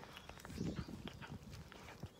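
Cat eating wet food from a paper bowl: a run of quick, irregular chewing and smacking clicks.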